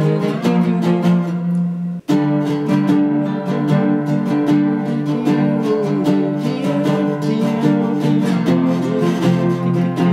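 Three-string cigar box guitar tuned open E (E–B–E) being strummed while fretted with a slide, notes sliding a little between chord positions. The sound breaks off for an instant about two seconds in, then the strumming continues.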